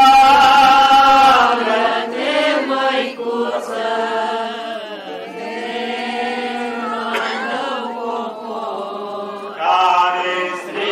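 Voices chanting a Romanian Orthodox hymn in slow phrases of long-held notes, with brief breaks between phrases.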